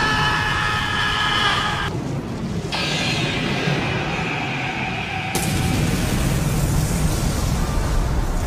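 Dramatic background music mixed with rumbling explosion and fire sound effects from a tokusatsu battle scene. A louder noisy blast comes in about five seconds in.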